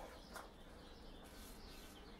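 Near silence: faint room tone with a soft click about a third of a second in and faint high chirps in the background.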